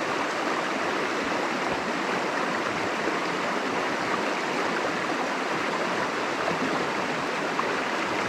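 Mountain stream rushing steadily over rocks in a shallow riffle.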